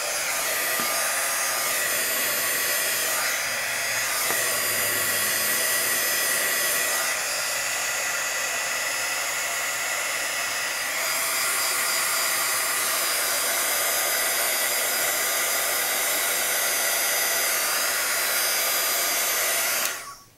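Craft heat tool blowing hot air steadily to dry alcohol ink on a metal embellishment, an even rush of air with a thin steady whine. It cuts off suddenly at the very end.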